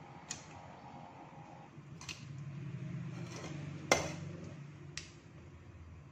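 Metal clinks and knocks on a stainless steel pot as chicken feet are dropped in and a slotted metal ladle is handled in it: four short knocks, the loudest about four seconds in. A low hum sits underneath, swelling through the middle.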